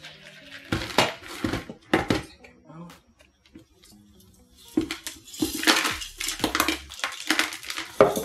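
Clear plastic container handled and knocked while a philodendron is worked out of it, with the gritty rattle of granular PON substrate. Two sharp knocks in the first two seconds, a quiet stretch in the middle, then a denser run of clattering and rattling from about five seconds on.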